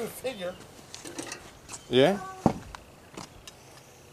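Quiet voices, mostly speech, with one short spoken 'yeah' about two seconds in, followed by a sharp click and a few fainter ticks.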